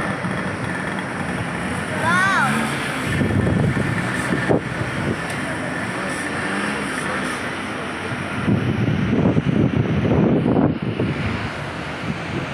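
Steady rush of white-water rapids in a mountain river below, with voices in the background. A short high call rises and falls about two seconds in.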